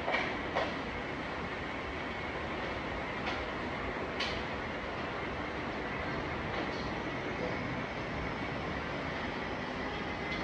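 Steady even rushing noise with a faint high steady whine running through it. A few sharp clicks cut in: two in the first second, then two more about three and four seconds in.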